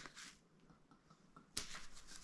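Near silence, then one sharp slap of two palms meeting in a high five about one and a half seconds in.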